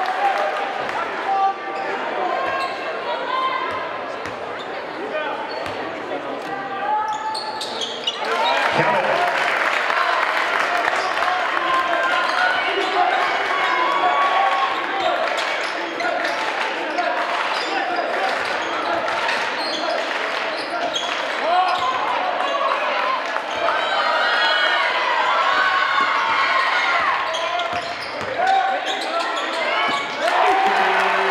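Gymnasium crowd noise at a high school basketball game: many voices talking and calling out over a basketball bouncing on the hardwood court. The crowd gets louder about eight seconds in and stays louder.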